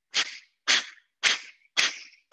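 Breath of Fire: a person's sharp, forceful exhales through the nose, four short hissing puffs about half a second apart, each pushed out by a squeeze of the lower abdomen while the inhale happens on its own.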